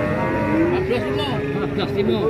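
A cow mooing: one long, low call that rises slightly and then falls away over about a second and a half.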